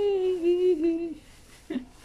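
Newborn baby crying: one held wail of about a second with a couple of small breaks, then a brief second sound near the end.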